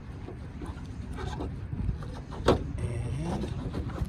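A sharp click about two and a half seconds in as the hood of a BMW X5 is unlatched and opened, over a steady low rumble.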